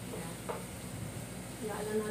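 Shrimp sizzling in a frying pan while a wooden spatula stirs them around, with a brief click about half a second in.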